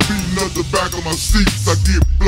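Chopped-and-screwed Houston hip hop: slowed-down rapping over a beat with heavy bass.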